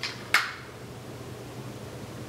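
A quick, sharp sniff about a third of a second in, from a person smelling a paper perfume test strip. After it there is only quiet room tone with a low steady hum.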